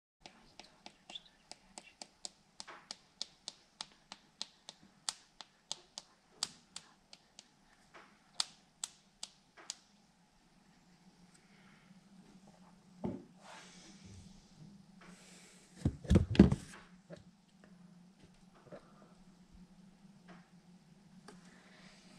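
A run of evenly spaced sharp clicks, about two and a half a second, for the first ten seconds. Then soft handling noise on a wooden tabletop, with a knock and, about two-thirds of the way in, a couple of heavy thumps, the loudest sounds here.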